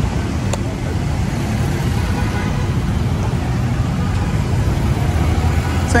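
Road traffic at a city junction: cars passing close by, a steady low rumble, with a brief click about half a second in.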